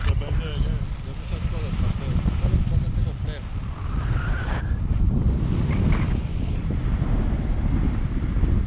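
Wind buffeting the action camera's microphone in flight under a tandem paraglider: a steady, low rumble of rushing air.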